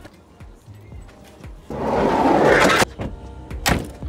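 A Volkswagen van's door being opened: a loud rushing slide about two seconds in, then a sharp latch click near the end.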